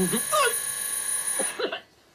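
An electric doorbell rings once, steadily, for about a second and a half, then cuts off sharply. A woman's voice laughs and exclaims over the start of the ring and again just after it stops.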